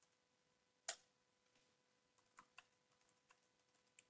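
Faint, scattered computer keyboard keystrokes: one sharper click about a second in, then a few lighter taps near the end, over a faint steady hum.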